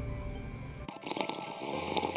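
Soft background music, then about a second in a wet, crackly slurping as a hot coffee drink is sipped from a paper cup.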